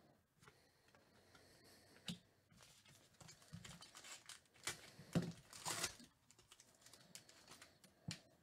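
Faint crinkling and crackling of a foil trading-card pack wrapper being handled and opened, with light clicks of cards being handled. The crinkling is densest and loudest about four to six seconds in.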